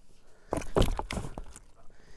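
A short run of thumps and scuffs, lasting about a second: a musky being pressed down onto a wet bump board on the boat deck.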